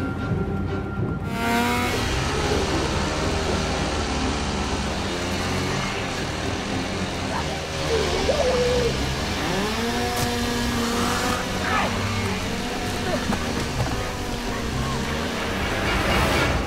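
A chainsaw engine running and revving hard, with vocal cries and snarls over it, in a loud horror-film sound mix. It starts sharply about a second and a half in, after a stretch of music.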